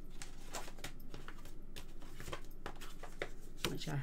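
Sheets of cardstock being sorted and handled: a run of light paper rustles and small taps as a sheet is picked out and laid down.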